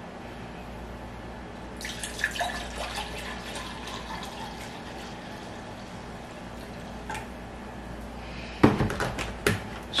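Pickling vinegar poured into a glass measuring cup: a steady trickle of liquid that starts about two seconds in and runs until near the end. A few sharp knocks follow near the end.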